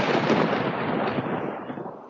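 Recorded thunder played as a sound effect: a loud, dense rumble, already under way, that fades out over the last half second.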